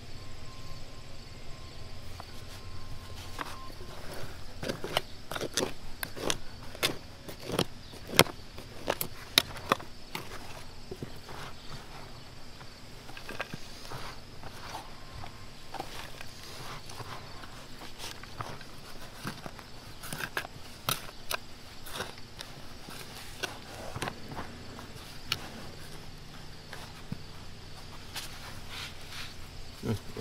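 Hand trowel digging and scraping in packed dirt, making repeated sharp scrapes and knocks that come thickest between about five and ten seconds in.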